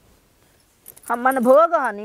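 Speech: after about a second of near silence, a woman's voice talks with a strongly rising and falling, exaggerated pitch.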